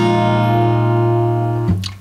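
Steel-string acoustic guitar ringing out an A7sus4 chord just played as an arpeggio. The chord sustains evenly and is damped about 1.7 seconds in.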